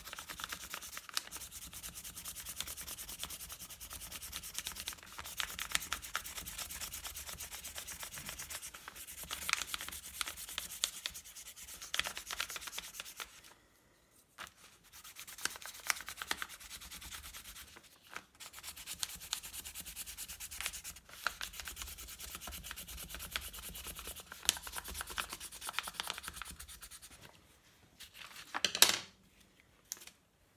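A colour pencil rubbed rapidly back and forth over thin paper laid on a textured tile, a continuous scratchy rasp with a couple of short pauses. Near the end there is a louder swish of paper as the sheet is lifted off.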